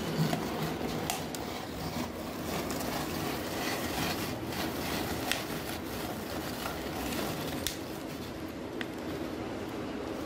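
Plastic hand-cranked drum rotary vegetable cutter being turned, its blade drum grating potato slices: a steady rumbling noise with a few sharp plastic clicks.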